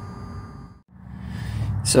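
Low, steady background noise that drops out briefly about a second in, where the recording cuts, then returns just before a man starts speaking near the end.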